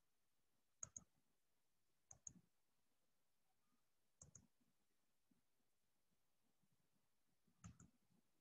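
Faint clicks in near silence: four short double clicks spread over several seconds, typical of a computer mouse button being pressed and released while browsing.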